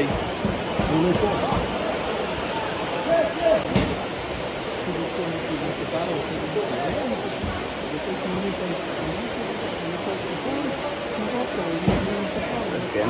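Heavy rain falling steadily, a constant hiss, with faint voices of nearby spectators talking underneath.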